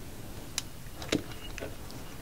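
Three light clicks and knocks from handling a roll of double-sided tape and a metal baton shaft, the loudest a little past the middle.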